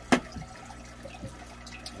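Water trickling and dripping under a steady low hum, with one sharp plastic click just after the start and a few faint ticks later, as a swing-arm hydrometer is handled and drained after a salinity test.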